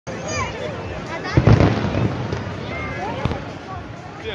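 Fireworks going off overhead, with the loudest bangs and crackle about one and a half seconds in and another sharp bang near the end, over the voices of a large crowd.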